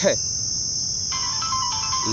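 Steady, high-pitched drone of insects calling in dry scrubland, with a lower steady tone joining about a second in.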